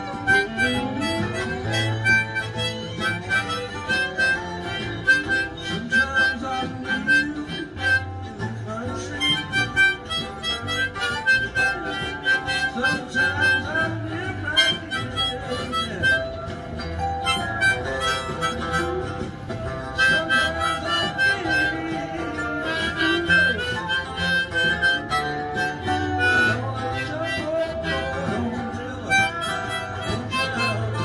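Harmonica played with both hands cupped around it, a run of notes that bend up and down. It plays over backing music that has a low, recurring bass pulse.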